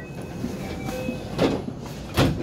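Steady running noise inside a commuter train car, with a single thump about one and a half seconds in.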